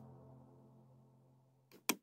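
Background music fading out to near silence, then a computer mouse button clicked near the end, a faint press followed by a sharper release.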